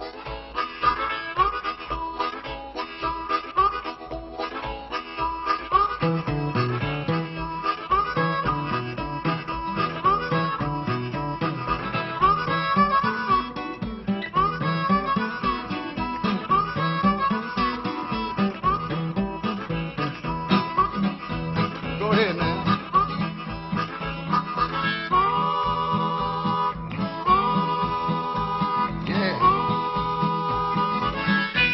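Diatonic blues harmonica playing a rhythmic instrumental blues, with an acoustic guitar's low notes joining about six seconds in. Near the end the harmonica holds long chords that bend down in pitch at their ends.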